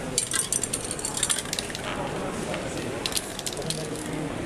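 Aerosol spray-paint can hissing in short bursts, with a few sharp clicks among them, most of it in the first half and again near the end.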